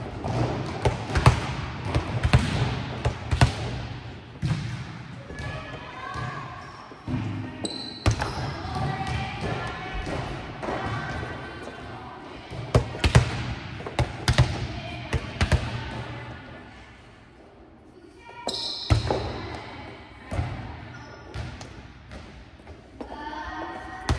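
Volleyballs being hit and bouncing on a hard gym floor, many separate thuds that ring out through a large hall, with a quieter lull about two-thirds of the way through.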